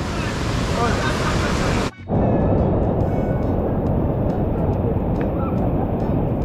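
Rushing river water over rocks, with a voice heard briefly about a second in. It breaks off sharply about two seconds in, and a duller, lower rush of water and wind on the microphone follows, with the high end gone.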